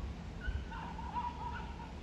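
A bird calling in a short run of wavering notes, starting about half a second in and lasting over a second, over a steady low rumble.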